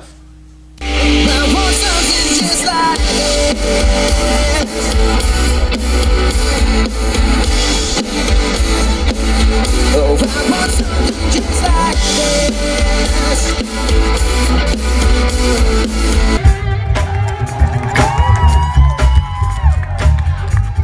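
Pop-rock band music with electric guitar, drums and heavy bass, starting about a second in. Near the end it cuts to a different song, with a singing voice.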